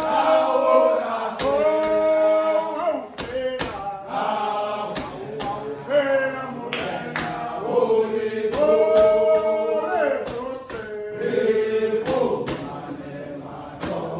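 A group of men singing a chant together, long held notes in several voices sliding between pitches, with sharp strikes punctuating the song.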